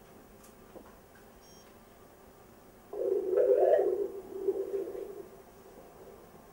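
Pulsed-wave Doppler audio from an ultrasound scanner sampling the portal vein: a low whooshing of continuous, slow venous blood flow that comes in about three seconds in and lasts about two seconds. It is preceded by a brief faint beep from the scanner.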